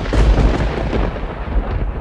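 Thunder-like rumble sound effect for a title card: a loud, deep boom with a hissy top that starts suddenly and cuts off after about two seconds.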